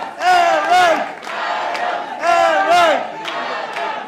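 A rally crowd chanting in unison: a two-syllable shout repeated about every two seconds, with clapping between the shouts.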